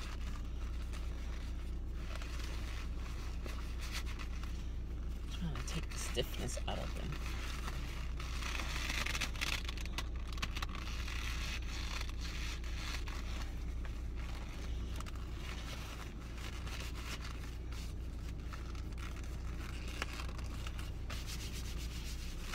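Black leather gloves rubbing and creaking against each other, with short leather squeaks about six seconds in and a spell of brisker rubbing a few seconds later. A steady low hum runs underneath.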